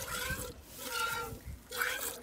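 Hand-milking a cow: squirts of milk from a squeezed teat into a two-quart stainless steel bucket that already holds milk, a short hissing spray about once a second.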